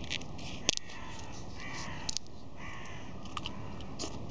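Faint bird calls outdoors, a couple of short calls around the middle, over a light steady hiss, with a few sharp clicks, the loudest under a second in.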